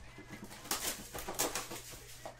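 Sealed trading-card hobby box being lifted off a stack and slid across the table: a few short rustling, scraping handling noises about a second in.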